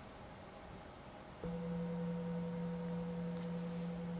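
A singing bowl struck once about a second and a half in, then ringing on steadily with a low hum and a clear higher tone above it. The strike signals the start of a short meditation session.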